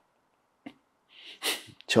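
A man's short, sharp intake of breath about a second and a half in, framed by faint mouth clicks, in a pause before he goes on speaking.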